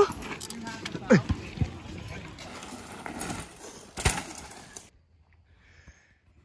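Outdoor voices, with short yells that fall in pitch about a second in, over a steady hiss. A sharp knock comes about four seconds in, then the sound cuts off almost to silence.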